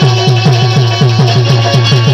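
Instrumental break of Indian folk music: a harmonium holds chords over a fast hand-drum beat, about four strokes a second, whose bass strokes bend down in pitch.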